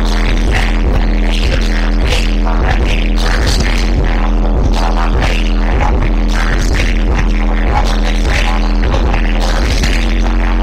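Live hip-hop played loud through a club PA: a DJ's beat with a deep sustained bass and steady drum hits, with the rappers' vocals over it.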